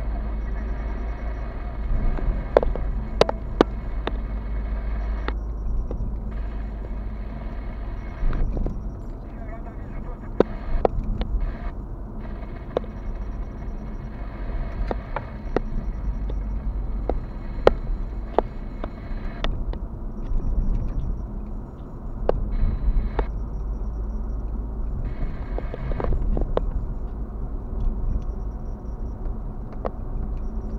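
Car cabin noise while driving: a steady low rumble of engine and tyres on the road, with scattered sharp clicks and knocks from the car.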